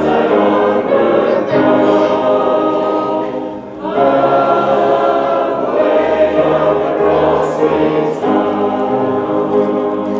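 A choir singing, held chords changing every second or two, with a short breath break just before four seconds in.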